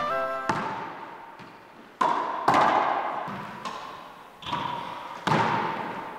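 A ball being smacked with rackets and rebounding off the walls of a racquetball court: a series of sharp hits, about five strong ones and a few lighter ones, each ringing out in a long hollow echo.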